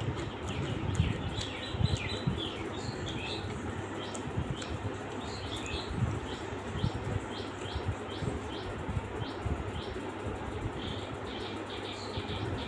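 Close-up chewing and mouth sounds, irregular soft knocks and crackle, from eating by hand. Behind them, small birds chirp repeatedly in short falling chirps, about one or two a second.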